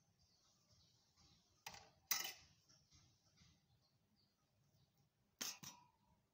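Light clinks and knocks of kitchenware being handled: two quick pairs of sharp taps, one a couple of seconds in and another near the end, against near silence.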